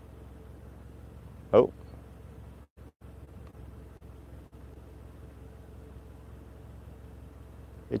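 A steady low background hum with a faint steady higher tone. About a second and a half in, a man says a short "oh". The sound drops out briefly just before the three-second mark and again shortly after four seconds.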